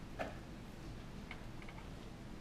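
Quiet room tone with a low hum and a few faint, irregular clicks. The sharpest click comes about a quarter second in, and a small cluster follows near the end.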